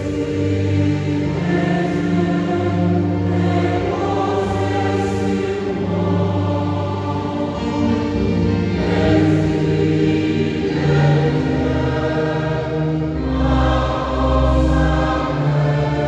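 Church choir singing in long, held notes, continuous throughout.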